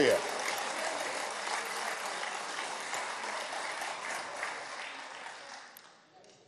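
Applause from members of parliament filling a large chamber, mixed with a few voices, dying away over the last second or so.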